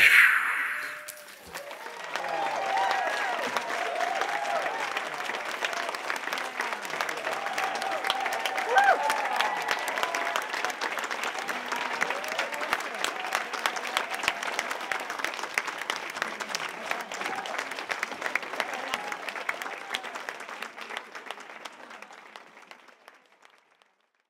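Audience applauding and cheering with whoops over the clapping. The applause slowly dies away near the end.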